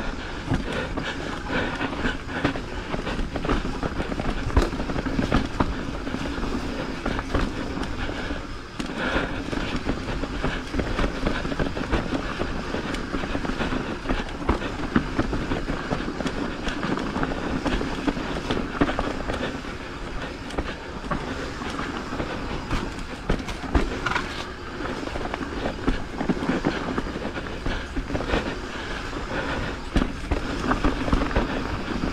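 Mountain bike rolling fast down a rough dirt trail: continuous tyre noise on dirt and rattling of the bike over bumps, with many small knocks and a brief lull about nine seconds in.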